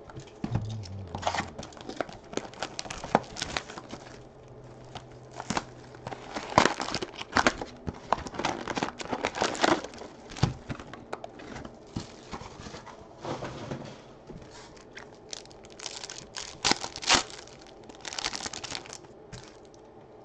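Foil trading-card pack wrappers being torn open and crumpled while a stack of cards is handled: irregular crackling and rustling, busiest in the middle and again near the end.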